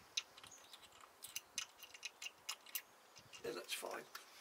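Faint, irregular light clicks and taps from hands handling the oil-damper cap on top of the Morris Minor 1000's SU carburettor.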